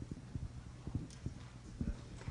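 Footsteps on a hard wooden floor: a run of soft, irregular low thumps and knocks.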